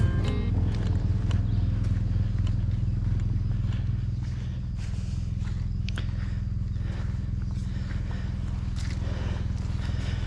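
Honda NC750X motorcycle's parallel-twin engine running steadily at low revs while riding slowly on a wet, slippery dirt road; it eases off slightly about four seconds in. A few sharp clicks come over it in the second half.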